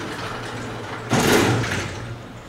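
Vertical sliding blackboard panels being pushed up in their frame: a steady sliding noise, with a louder, harsher scrape lasting most of a second from about a second in.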